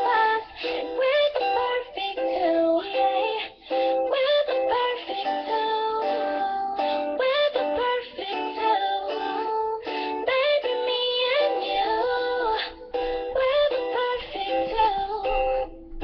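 A young girl singing a pop love song while strumming a thin-sounding electric guitar, in a small room.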